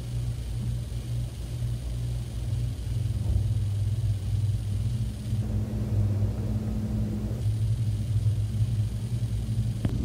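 A steady low rumbling hum, with no speech over it.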